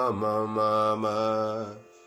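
A man singing sargam note syllables on a nearly level pitch with small note changes, stopping near the end.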